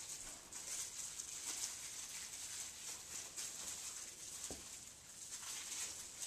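Faint rustling of a small fabric Christmas stocking being handled and searched through by hand, with one soft thud about four and a half seconds in.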